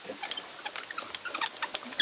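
Antique two-speed hand crank drill being cranked in its lower gear as the bit bores into wood: a quick run of irregular clicks and short squeaks from the turning gears and the bit, with the cranking going easily now.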